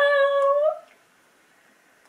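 A young woman's high-pitched wailing cry: one long held note that lifts slightly at its end and breaks off under a second in, followed by quiet.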